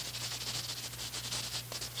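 Gray chalk scratching across drawing paper in quick, short, closely spaced strokes, heard over the steady hum and hiss of an old film soundtrack.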